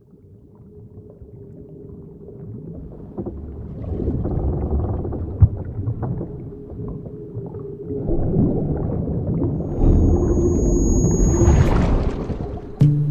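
A rumbling ambient swell fades in from silence and builds steadily louder over about ten seconds. Near the end it rises into a hissy whoosh that leads into the song.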